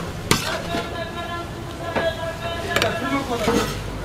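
Metal ladle and tongs clinking against a large steel pan of tteokbokki as the saucy rice cakes are scooped into a plastic takeout tray: about four sharp clinks, over a steady background hum.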